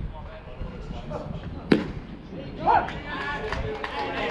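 A single sharp crack of a pitched baseball meeting the batter's bat or the catcher's mitt at home plate, a little under two seconds in. Loud shouts from players follow near the end.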